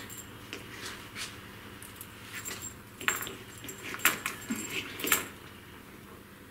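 A handful of cable ends with white plastic multi-pin plugs and a metal round connector rattling and clicking together as they are sorted by hand, with sharper clacks about three, four and five seconds in.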